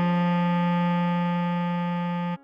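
Bass clarinet holding one long steady note, written G4 (sounding F3), over a held Db major chord on keyboard.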